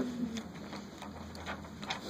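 Quiet classroom room noise with a low steady hum, a faint voice trailing off at the start and a few light ticks.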